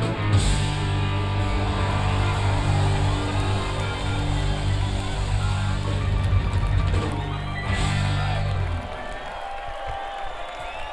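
Live rock band with electric guitars, bass and drums holding a big closing chord, with cymbal crashes near the start and again about eight seconds in. The band stops about nine seconds in.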